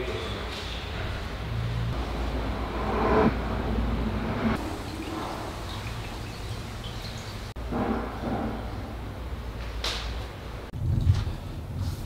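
Low steady rumble of room and camera-handling noise, with faint, indistinct voices from elsewhere in the house.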